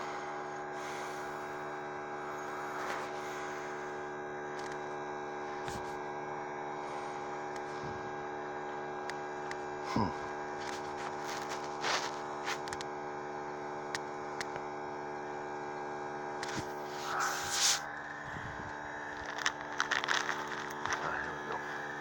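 A steady machine or electrical hum made of several fixed tones, with a few faint clicks and knocks over it.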